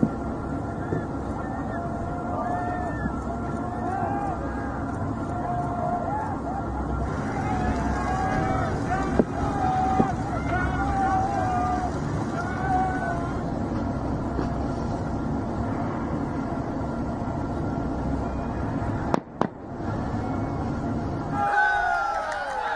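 People on a crowded dinghy shouting and screaming, with wavering, wailing voices over the steady rumble of boat engines and sea. Two sharp cracks stand out near the middle.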